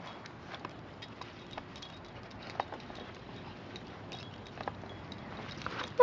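Faint rustling with scattered light clicks and taps, from a small dog and a person moving about in grass.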